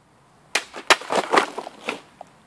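A sword cutting through a water-filled plastic bottle: two sharp cracks about half a second and a second in, then a quick spill of splashing and clattering as the cut pieces and water fall, with one last knock near the end.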